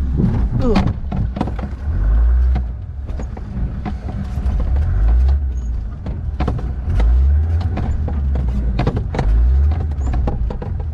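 Land Rover running as it is driven over bumpy wet grass, its low engine note swelling in surges roughly every two seconds, with knocks and rattles from the cab and body.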